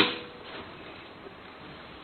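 A single sharp clack right at the start as the smart lock's rear panel is pressed shut against the door, ringing off briefly.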